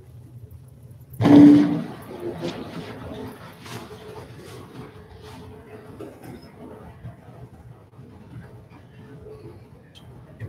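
A single sudden loud burst about a second in, carrying a brief low pitched note, fading within half a second. Faint scattered small noises in a quiet room follow it.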